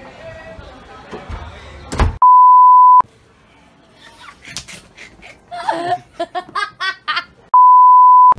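An edited-in pure beep tone, the test-card tone laid over colour bars, sounds twice. It lasts almost a second about two seconds in, and comes again near the end. Each time it is steady and loud and stops abruptly.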